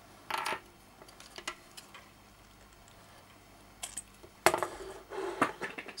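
Small clicks and clatter of a bare audio-interface circuit board being unplugged and handled on a wooden bench: a short scrape near the start, scattered light clicks, and one sharp click about four and a half seconds in followed by handling noise.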